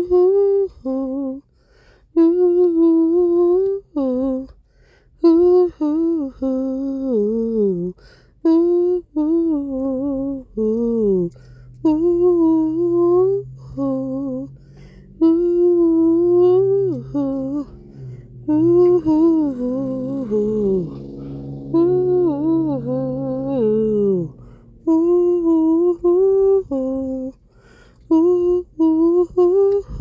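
A woman humming a wordless home-made tune in short melodic phrases, with a lower held note and falling glides under the melody through the middle.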